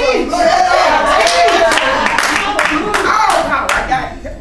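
Hand claps from the audience, several a second from about a second in, under voices talking.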